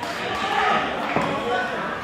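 Indistinct voices of players chatting in a large indoor sports hall, with the echo of the hall, and one sharp knock a little over a second in, like a ball or bat striking the court floor.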